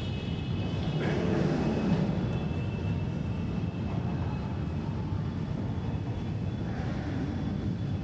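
A steady low rumble of background noise, with faint high steady tones in the first couple of seconds.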